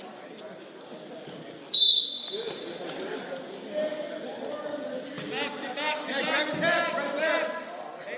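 A referee's pea whistle blows once, short and shrill, about two seconds in, starting the wrestling from the referee's position. Voices shout from the sidelines afterwards.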